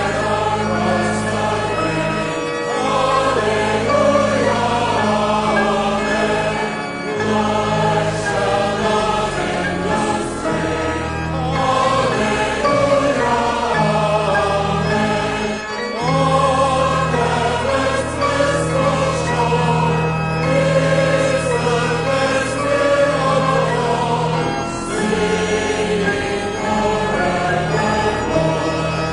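Church choir singing a hymn over organ accompaniment, the organ holding long sustained bass notes that change with the chords.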